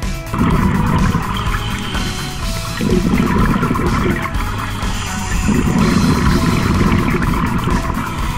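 A diver's scuba regulator exhaust bubbles rumbling underwater in repeated surges, heard over background music.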